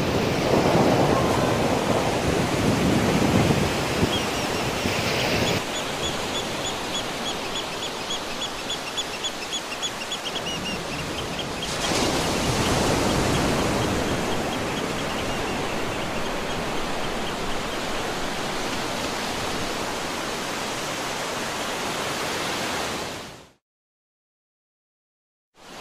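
Surf breaking and washing up a beach: a steady rushing of water, louder in the first few seconds. A rapid, evenly repeated high chirping runs for several seconds in the middle. The sound cuts off abruptly near the end.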